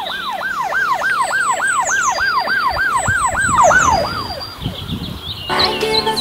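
Police siren in a fast up-and-down yelp, about three or four sweeps a second, fading out about four and a half seconds in. Music starts near the end.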